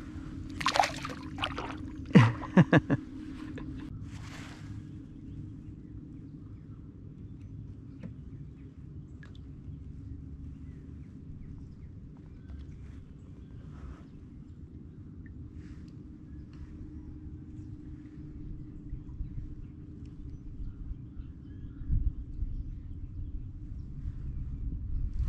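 Kayak drifting on calm water: low wind rumble on the microphone, light water sloshing and faint ticks of gear against the hull. There are a few short louder sounds in the first three seconds as a small fish is let go over the side, and a low thump near the end.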